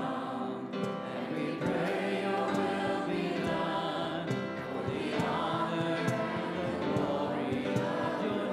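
Church worship team singing a worship song together, several voices at once.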